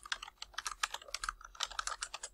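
Fast typing on a computer keyboard: a quick, irregular run of keystroke clicks.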